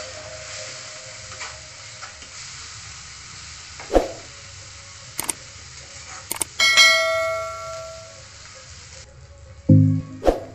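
Onion and spice masala sizzling in a nonstick frying pan as a metal spatula stirs it, with sharp knocks of the spatula against the pan about four, five and six seconds in. A bell-like chime rings out near seven seconds, and the sizzle fades out near the end.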